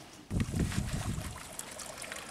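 Low, uneven rumble of handling noise on the camera microphone as the camera is carried down toward the hole. It starts suddenly a moment in and eases off after about a second.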